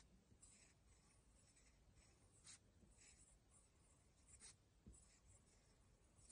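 Very faint scratching of a writing tool on paper as joined-up letters are written, in short strokes with a few small ticks.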